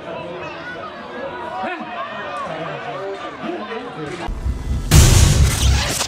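Players' voices calling and talking out on a football pitch. About four seconds in, a sudden, much louder booming swoosh sound effect of a channel logo transition takes over and is the loudest thing, cutting off at the end.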